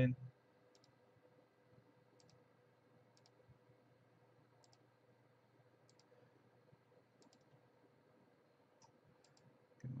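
Faint computer mouse clicks, about ten spaced irregularly a second or so apart, as points are clicked one by one to trace a lasso selection. A faint steady hum runs underneath.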